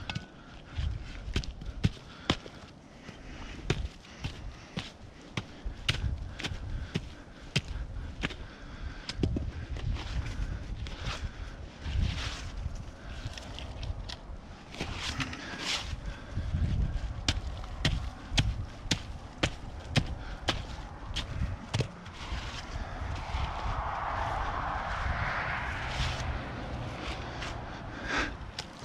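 Gloved hands scraping and digging wet soil and snow out of a trap bed, with many small clicks and knocks of pebbles and of a steel foothold trap being handled and set into the hole. Near the end a vehicle passes on a nearby road, its noise swelling and then fading.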